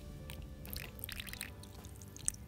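A thin stream of water poured from a plastic bottle into a small plastic water dish, with faint splashing and trickling. Faint background music runs underneath.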